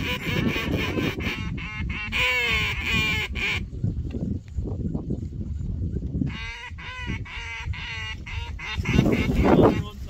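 Snow geese calling: many overlapping high honks, in a long spell at first and a shorter one about two-thirds of the way in.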